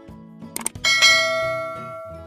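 Two quick clicks like a mouse button, then a bright notification-bell ding just under a second in that rings on and fades away, over soft background music.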